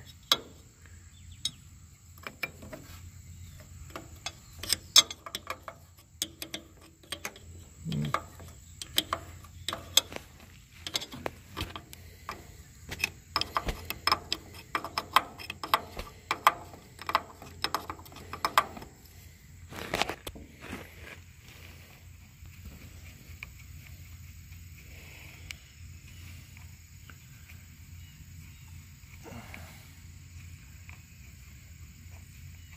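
A metal wrench clicking and clinking on bolts as they are worked loose beside the combine's reel-drive sprocket: a run of irregular sharp clicks for about twenty seconds, with one louder knock near the end of the run, then only a faint steady background.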